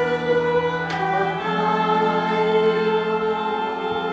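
Choir singing slow sacred music in long held notes, the chord changing about a second in.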